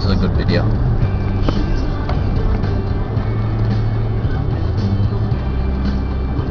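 Engine and road noise of a moving car heard from inside the cabin, a steady low hum, with music playing over it.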